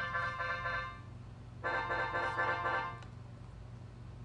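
Finale 2012a notation software playing back a sustained brass chord, twice, each time about a second and a half long with a short gap between. It is a trial voicing with a concert B-flat added in the first horn part.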